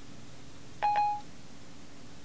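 Siri's electronic chime on an iPhone 4S: a short two-note tone about a second in, the sound Siri makes when it stops listening to a spoken command and starts processing it.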